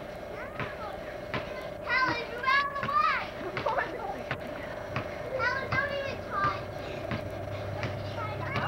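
Young children's voices calling out and shouting in play, in two short bursts, over a steady faint hum.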